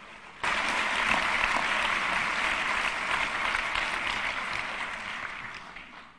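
Audience applauding in a lecture hall. It starts suddenly about half a second in, holds steady, and dies away near the end.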